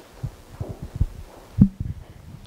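Irregular low thumps and bumps in quick succession, the loudest about one and a half seconds in, followed by a brief low hum.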